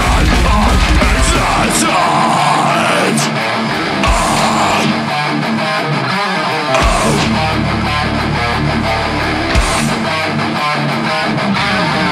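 Live heavy metal band playing: distorted electric guitars over bass and drums. A rapid pounding drum pulse drops out about two seconds in, leaving the guitars riffing with only a few single low hits.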